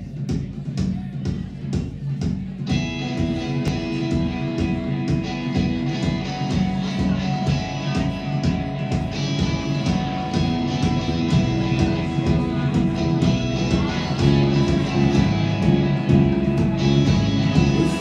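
A live band playing a song's instrumental intro: guitars, bass and drums over a steady beat, with more instruments filling in about three seconds in and the sound growing fuller near the end.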